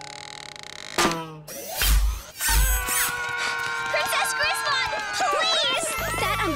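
Cartoon soundtrack effects: a faint hiss, then a swoosh about a second in and two deep thuds around two seconds. After that, music with held tones comes in, with wavering, warbling vocal-like sounds over it.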